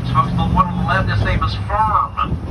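A man's voice talking over the steady low hum and road noise of an open-air tour trolley in motion.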